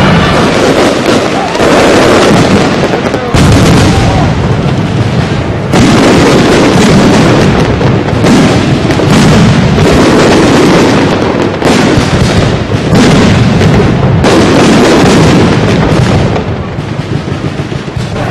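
Fireworks display: a dense, very loud barrage of bangs and crackle, with fresh volleys breaking in every second or two.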